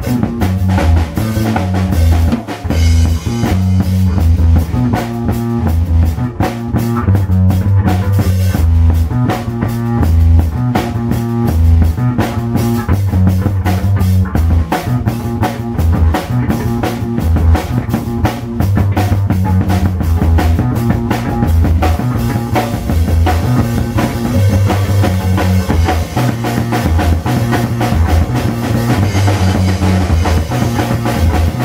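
A drum kit and an electric bass playing a live jam together: a heavy repeating bass line under steady kick, snare and cymbal hits.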